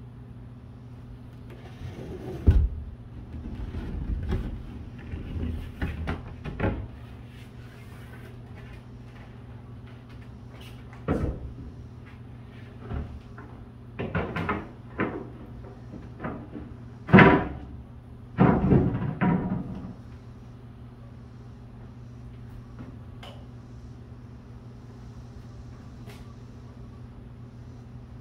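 Wooden floor pieces knocking, bumping and scraping against a boat hull in irregular bursts, the sharpest knock a little past the middle, over the steady hum of a box fan.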